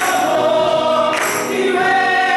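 Gospel praise team of several voices singing together, holding long notes, with a bright splashy percussion hit about a second in.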